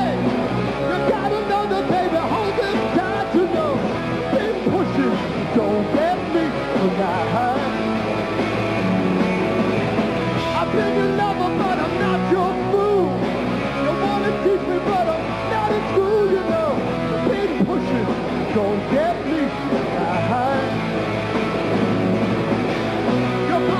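Live hard rock band playing a song, with electric guitar, bass and drums and a lead vocal over them.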